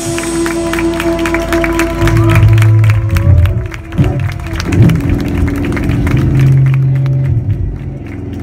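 Live rock band letting its last notes ring out: held electric guitar tones and shifting bass notes, with audience applause and clapping mixed in.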